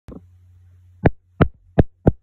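Fingers tapping on the recording device's microphone to check that it is recording: a click at the start, then three sharp taps about a third of a second apart from about a second in, over a low steady hum.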